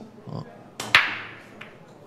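Break shot in Chinese eight-ball: a light tick of the cue on the cue ball, then a loud crack about a second in as the cue ball smashes into the racked balls. The scattering balls clatter and fade over about half a second, with one more ball click a little later.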